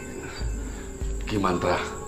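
Film soundtrack ambience: a steady high cricket trill over a held background music drone, with a short human vocal sound about a second and a half in.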